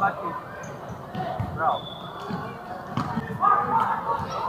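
Futsal ball being kicked and bouncing on a hardwood indoor court, a few sharp thuds over the seconds, with players' and spectators' voices calling out around them.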